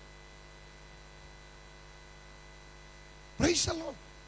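Steady electrical mains hum from the amplified sound system. About three and a half seconds in, a voice briefly cuts through over the microphone.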